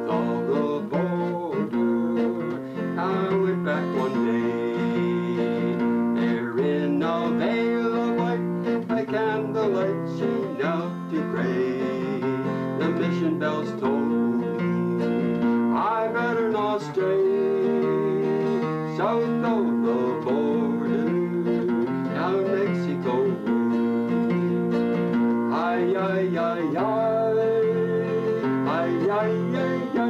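Acoustic guitar strummed steadily as a song accompaniment, with a man's voice singing along at times.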